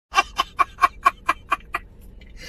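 A man laughing hard in a rapid, even string of about eight short 'ha' bursts, roughly five a second, that break off near the end.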